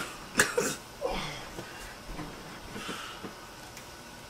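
A woman's short, breathy laugh in a few quick bursts during the first second or so, trailing off into quiet.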